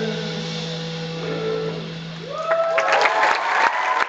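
An acoustic band's last chord rings out and fades, then about two seconds in the audience breaks into cheering and applause, with whoops rising in pitch.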